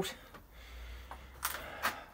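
Quiet handling noise from a phone being moved while it films: a low rumble, then two short rustles about a third of a second apart near the end.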